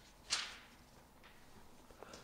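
A single short, soft rush of breath about a third of a second in, against otherwise near-quiet room tone.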